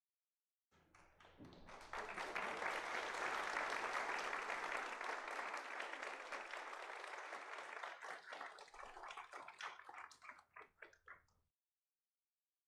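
Audience applauding. It swells up over the first couple of seconds, holds, then thins into scattered single claps and stops shortly before the end.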